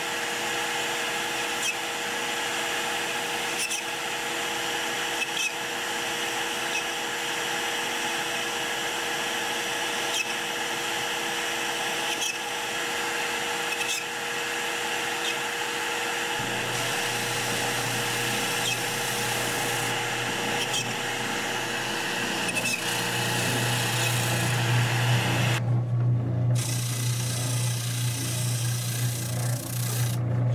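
CNC router spindle running with a small end mill cutting MDF: a steady machine whine made of several held tones, with a faint click about every second and a half. A low hum joins about halfway through and grows louder near the end.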